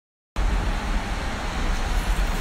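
After a brief moment of dead silence, a steady rumbling background noise comes in and holds, with a strong, fluttering low end.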